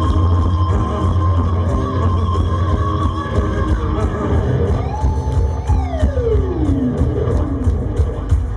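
Heavy metal band playing live: electric guitars over a steady heavy bass. About five seconds in, a held high guitar note dives steeply down in pitch over about two seconds.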